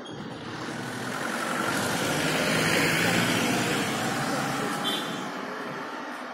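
A motor vehicle driving past on the road, its engine and tyre noise swelling to a peak in the middle and fading away, with a brief high beep about five seconds in.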